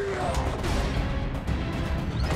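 Action-movie soundtrack: music over fight sound effects, with heavy low rumble and a few sharp hits.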